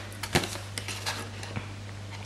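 Sharp Stampin' Up scissors snipping notches in cardstock: a few crisp blade clicks, the loudest about a third of a second in.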